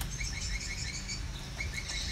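A bird chirping in quick runs of short, high, evenly repeated notes, clearest near the end, over a steady low background rumble.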